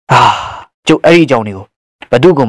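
A heavy breathy sigh lasting about half a second, then a few quick words of spoken narration.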